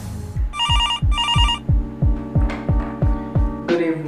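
Telephone ringing: two short trilling rings about a second in, over background music with a steady deep beat.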